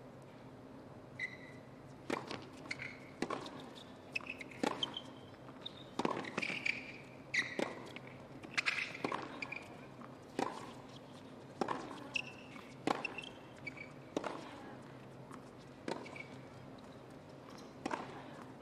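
Tennis ball struck back and forth by rackets in a long baseline rally on a hard court, about thirteen sharp hits roughly every second and a half, with short high squeaks between some strokes.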